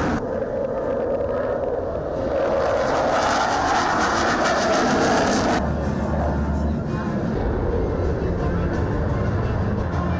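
HAL Tejas fighter jet's turbofan engine during a low flypast: a broad rushing jet noise that builds over the first few seconds, then cuts off abruptly a little past halfway. A duller, steadier low hum follows.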